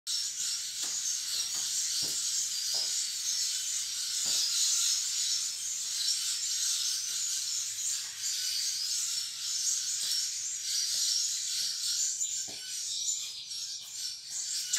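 A steady, high-pitched background chorus of chirping in the garden, with a few faint taps scattered through it.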